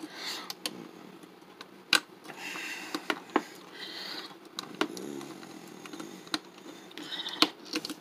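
Plastic clicks and soft handling noise from a small plastic Transformers cassette figure being folded into tank mode: parts snap into place in a series of irregular clicks, with brief rubbing of plastic against fingers between them.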